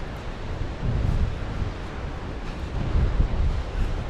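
Gusty sea wind buffeting the microphone, with a low rumble that swells twice, over the wash of surf breaking on the rocks.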